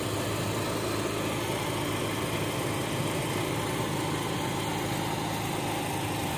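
A small engine running steadily, an even drone that does not change.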